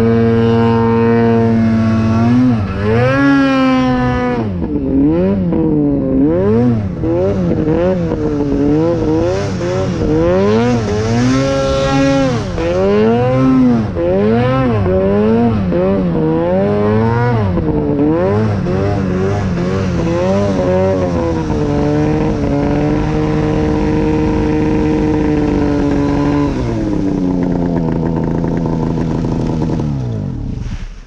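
Two-stroke Arctic Cat mountain snowmobile engine being ridden through deep powder, its pitch rising and falling over and over as the throttle is worked. Near the end it holds a steady pitch for a few seconds, then drops to a lower, steady note as the sled slows to a stop.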